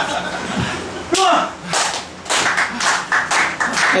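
Rhythmic hand clapping that starts about a second in and quickens to about five claps a second: clapping to rally the crowd behind the challenger. A short shout comes just before it.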